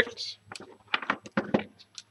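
A quick run of small, irregular clicks and taps from hands handling the RC truck and its parts on a wooden workbench, about a dozen in under two seconds.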